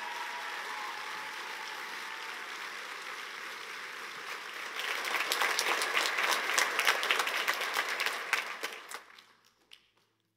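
Audience applauding. The clapping swells to its loudest about halfway through, then dies away near the end.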